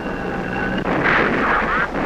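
War sound effects of artillery bombardment: a continuous rumbling with a steady high whine through the first part and a short whistling glide near the end.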